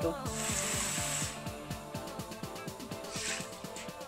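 Water poured from a plastic bottle into a steel pot of cooking chicken: a rush of pouring about a quarter second in lasting about a second, and a shorter pour about three seconds in. Background music with a steady beat plays throughout.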